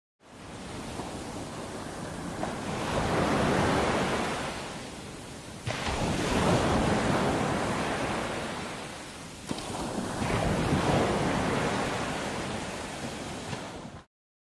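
Ocean surf washing onto a beach: three swells of wave noise that rise and fall, with two abrupt jumps in level.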